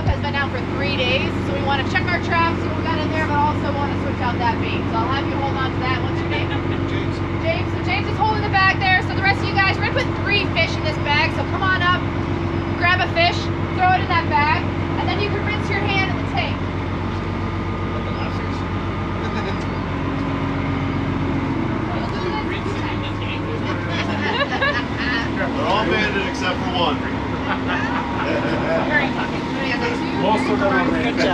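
Lobster boat's engine running steadily under a person talking; about three-quarters of the way through, the engine's note changes and its deepest hum drops away.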